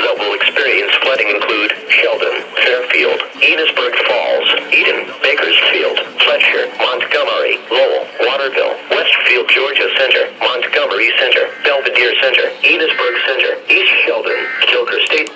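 Speech only: a broadcast voice reading on through a flash flood warning's list of affected locations, heard through a small radio speaker.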